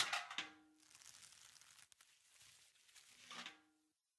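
A bucket being lowered on a rope into a pit. There is a sudden scrape at the start, faint rustling as it goes down, and a short creak near the end.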